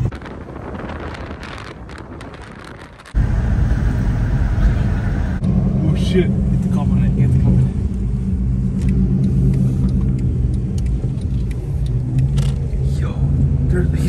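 Road and engine noise from vehicles driving: quieter, with scattered clicks, for the first three seconds. After a sudden cut about three seconds in, a steady low drone of a vehicle's engine and tyres is heard from inside the moving cabin.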